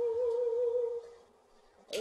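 A woman's solo singing voice holds a long note, hummed on the closing 'ng' of 'strong', with a slight vibrato; it fades out a little over a second in. After a short pause, a quick breath is heard just before she sings the next line.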